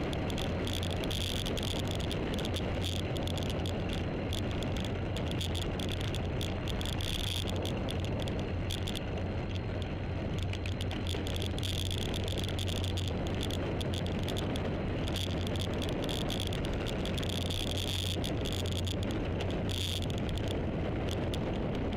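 Steady wind and road noise from a two-wheeler on the move, with a constant low hum. A high insect buzz comes and goes several times over the top.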